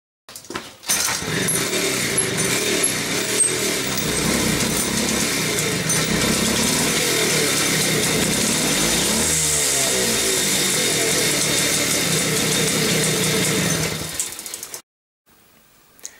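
Jawa Babetta 210 moped's small single-cylinder two-stroke engine starting about a second in and running, with a shift in revs about halfway through, then cutting off near the end.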